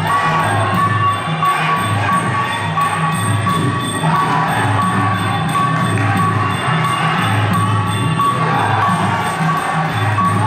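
Traditional Khmer boxing ring music played live: a reed pipe melody over a steady drum beat with small cymbals ticking in time, and a crowd cheering.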